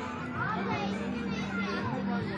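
Children's voices and chatter over background music with a sustained low note.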